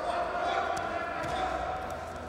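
Wrestling shoes scuffing and thudding on the mat as two wrestlers grapple and move their feet, with a few short squeaks and knocks. Voices call out over it.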